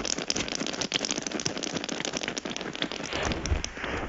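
Live electronic music played from handheld controllers: a dense, crackling stream of clicks and noise bursts, dropping away right at the end.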